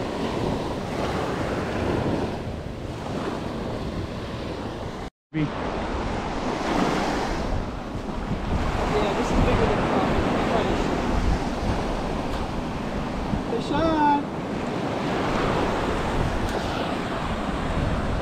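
Small surf waves washing steadily onto a sandy beach, with wind rumbling on the microphone. The sound cuts out completely for a moment about five seconds in.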